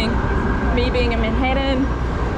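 Steady low rumble of city street traffic. A person's voice speaks briefly from about halfway through.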